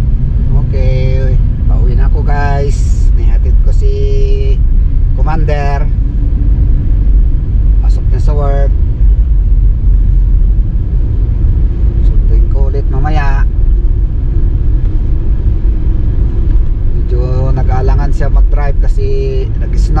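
Steady low road and engine rumble inside a moving car's cabin, with short bursts of a man's voice now and then.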